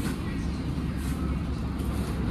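Shop background noise: a steady low rumble with faint voices in the distance.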